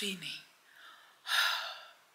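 A woman's word trails off, then a short, breathy gasp comes a little past halfway.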